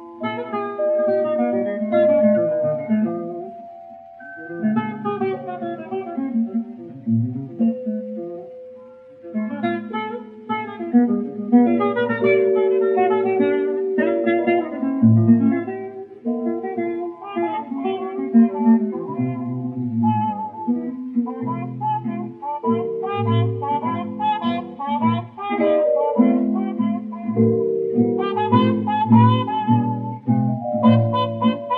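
A small jazz trio of trumpet, guitar and celesta playing a slow blues, heard from a 78 rpm shellac record. The sound is thin and narrow, with no deep bass or top end, as on an early disc recording.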